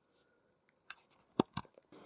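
A few short clicks in an otherwise quiet stretch, the loudest two close together about one and a half seconds in, with fainter ticks after them.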